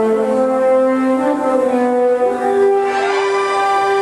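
Orchestral film score, with brass playing a slow melody of long held notes and swelling about three seconds in.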